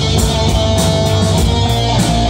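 Live instrumental rock played loud by a three-piece band: electric guitar, electric bass and a Yamaha drum kit with cymbals.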